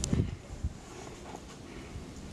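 German Shepherd pouncing and landing in deep snow: a dull thump at the very start and a softer one just after half a second in, then only quiet outdoor background.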